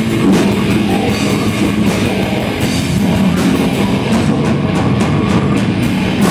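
Heavy metal band playing loud and live: electric guitars and a drum kit with repeated cymbal hits, in an instrumental passage without vocals.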